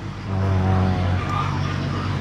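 An older man's long, drawn-out "à…", a low steady hesitation sound while he thinks of an answer.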